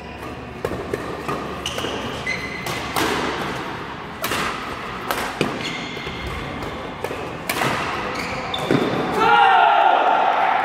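Badminton doubles rally: a quick run of sharp racket hits on the shuttlecock, with shoes squeaking on the court floor. The rally ends about nine seconds in with a player's loud shout.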